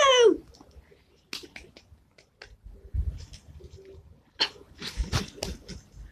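A child's high yell falling in pitch, cut off just after the start, then quiet scattered knocks, scuffs and clothing rustles, with a few louder thuds, as the child gets off a plastic garden slide and moves about close to the microphone.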